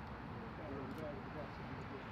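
Faint background voices talking over a steady low outdoor rumble.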